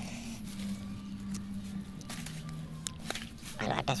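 A steady low background hum with a few faint clicks, then a man's voice just before the end.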